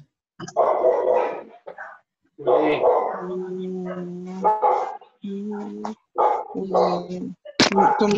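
A person's voice coming through a video-call connection, hesitant, with long drawn-out vowel sounds held at a steady pitch and short pauses between them.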